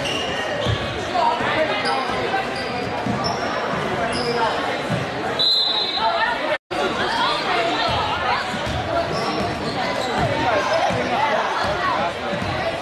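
A basketball being dribbled on a hardwood gym floor, its bounces ringing out in a large echoing hall over the voices of spectators and players. The sound cuts out completely for an instant just past halfway.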